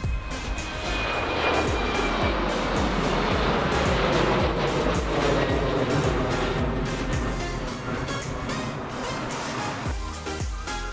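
Background music with a steady beat, mixed with the jet noise of a British Airways Embraer E-Jet's twin turbofans climbing out after takeoff. The jet noise swells about a second in, with a thin whine dropping slightly in pitch, and eases near the end.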